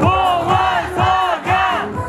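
Four chanted vocal shouts, about two a second, each rising then falling in pitch, sung by several voices in unison while the song's bass beat drops out.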